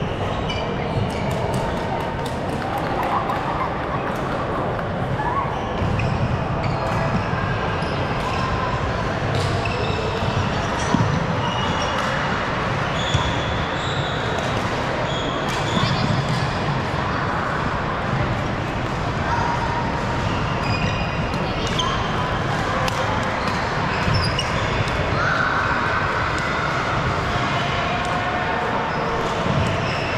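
Badminton play on a wooden indoor court: sharp racket strikes on the shuttlecock and short shoe squeaks on the floor, over the steady chatter of a crowded, echoing sports hall.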